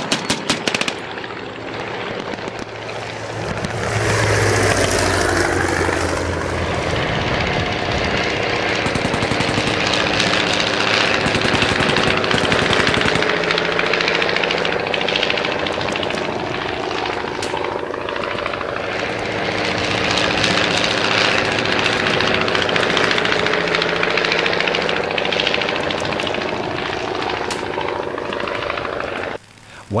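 A brief burst of machine-gun fire at the very start, then the engines of low-flying WWI replica fighter planes, a Nieuport biplane among them, running loud and continuous. The engine pitch drops as a plane passes a few seconds in and rises again twice later, before the sound cuts off just before the end.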